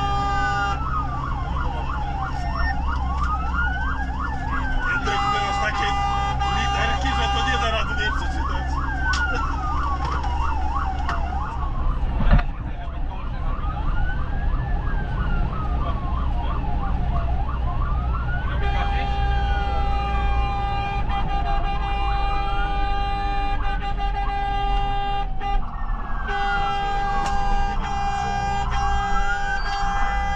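Fire engine siren heard from inside the cab: a wail that rises and falls about every four to five seconds, with a fast yelp running alongside it for the first ten seconds or so. Long steady horn blasts sound over it around five seconds in and again through most of the second half, above the truck's engine running underneath, and there is one sharp knock near the middle.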